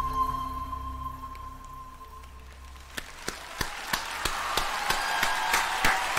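The long held note that ends the song fades out over about two seconds. Then concert-audience applause builds from about three seconds in, with sharp individual claps standing out.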